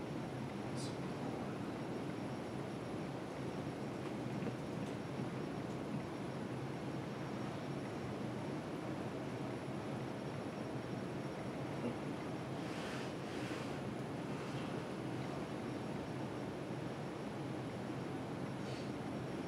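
Steady room tone: an even rushing hiss in a meeting room, with a few faint short sounds about two-thirds of the way through.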